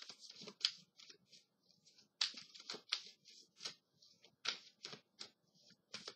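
A deck of tarot cards being shuffled by hand: a run of short, irregular, papery flicks and rustles, several a second.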